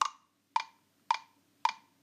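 GarageBand's metronome counting in one bar before recording: four evenly spaced clicks, a little over half a second apart.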